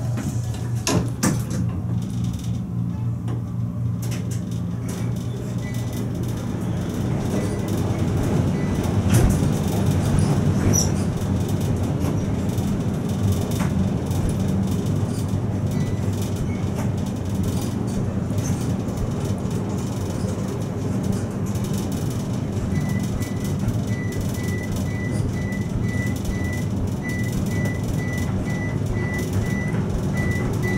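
A high-rise Otis elevator car climbing fast up its shaft from the lobby: a steady rumble and air rush with a low hum, building up over the first ten seconds as the car gets up to speed. A couple of knocks come near the start, and a faint high on-off tone sounds in the last few seconds.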